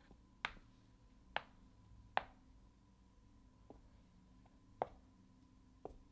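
Chess pieces being set down one after another on a Chessnut Air electronic chessboard as moves are played in quick succession: about six short, sharp taps at uneven intervals, one of them faint.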